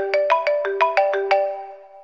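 Mobile phone ringtone: a quick melody of struck, pitched notes, about six a second, that stops about a second and a half in and rings out.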